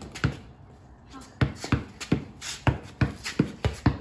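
Basketball dribbled on a concrete patio: one bounce near the start, then after a short pause a quick run of bounces, about three a second.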